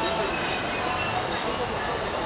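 Steady rain and street noise, with indistinct voices in the background.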